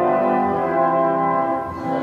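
Church organ music playing slow, sustained chords, the kind that opens a service.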